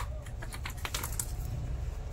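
Quick run of light clicks and rustling as an embellished dupatta is gathered up off a table. The clicks thin out after about a second, over a low steady hum.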